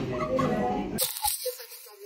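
Soft voices with a little laughter, then about a second in a brief rustling hiss as the phone that is filming is handled and moved.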